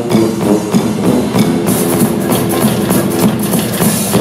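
Live brass-band groove carried by the drum kit and the sousaphone's bass line, with steady drum hits, while the trombones rest.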